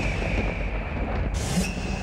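Title-sequence sound effects: a deep rumble under a thin, high, steady whine that slides slightly down in pitch, with a whoosh about one and a half seconds in.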